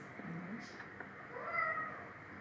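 A brief high-pitched, voice-like call that rises and falls about a second and a half in, preceded by a short low hum near the start.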